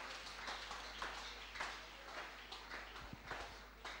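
Faint, scattered hand clapping from a church congregation: irregular single claps over a low hum of room noise.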